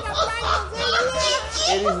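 Excited, high-pitched voices talking over one another, mixed with laughter.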